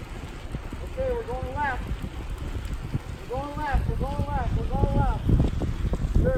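Wind on the microphone and a steady low rumble of small wheels rolling on asphalt. A voice calls out in short rising-and-falling calls, once about a second in and several times between about three and five seconds.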